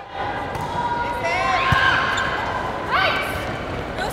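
Athletic shoes squeaking on an indoor sports court in short chirps over the hall's crowd noise, with a single low thud of the volleyball being struck a little under two seconds in.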